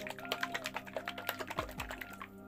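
Plastic bottle of RenCast FC52 polyol (the resin's polyol component) shaken hard to mix it, giving a rapid run of clicks and rattles.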